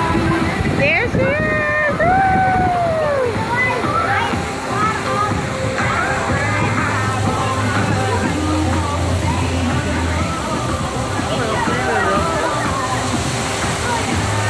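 Water running and splashing in a waterslide's shallow runout lane as a rider on an inner tube comes to a stop, over many voices shouting and calling.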